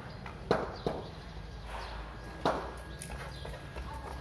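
Three sharp knocks on a hard stone-tiled floor, about half a second, one second and two and a half seconds in, irregularly spaced.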